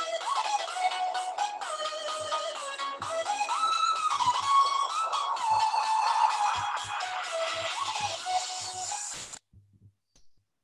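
Background music with a melody that cuts off suddenly near the end.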